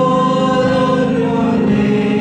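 A choir singing a slow worship song in long held chords, moving to new notes near the end.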